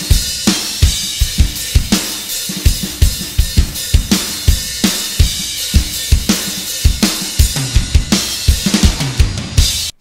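Soloed rock drum-kit track: kick drum, snare with fast ghost notes between the backbeats, and cymbals in a busy triple-meter (6/8) groove. It cuts off suddenly just before the end.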